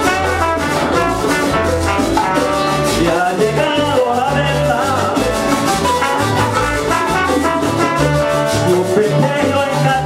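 Live Latin band playing an upbeat number led by Puerto Rican cuatros, over a steady bass line with trombone and hand percussion.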